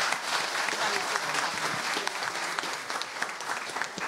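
An audience applauding, a steady patter of many hands clapping that eases off near the end.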